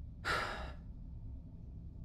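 A man's single short sigh, an exasperated breath out lasting about half a second, over a faint low background hum.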